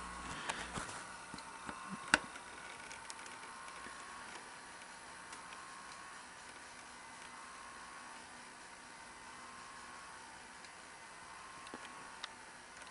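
A thin, faint whine that wavers and swells over steady hiss: a Sony SL-5000 Betamax deck running with its capstan servo unable to lock, so the capstan motor keeps pulsing. One sharp click comes about two seconds in.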